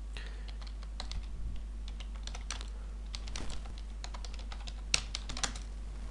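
Computer keyboard keys being typed on in irregular runs of short clicks, over a steady low electrical hum.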